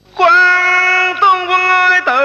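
A high voice singing held notes in Vietnamese cải lương style, stepping between pitches with slight wavering. It comes in sharply about a fifth of a second in, after a brief hush.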